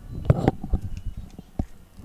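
A handful of sharp knocks and clicks, the loudest about a third of a second in.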